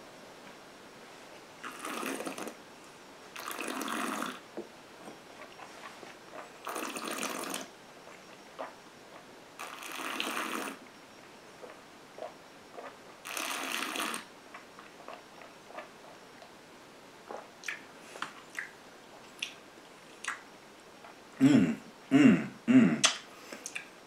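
A person breathing through a mouthful of whisky while tasting it: five breathy breaths, each about a second long and a few seconds apart, then a few short mouth sounds near the end.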